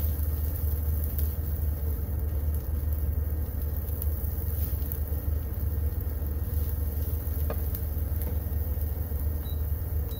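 Oyster mushroom strips frying in a nonstick skillet on an induction cooktop, a spatula stirring and tossing them with an occasional light click, over a steady low hum.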